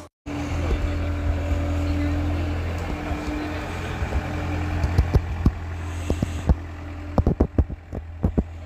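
Linde forklift running with a steady low engine hum as it drives. A series of sharp knocks and clicks comes in the second half.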